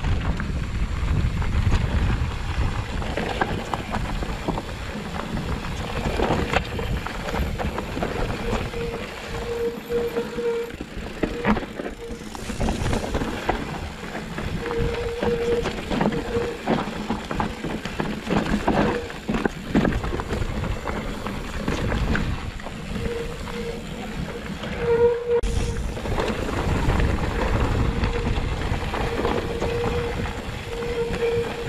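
Mountain bike ridden down a rocky forest trail, heard from a helmet-mounted camera: wind rumbling on the microphone and the bike rattling and knocking over rocks and roots, with a steady hum that comes and goes several times.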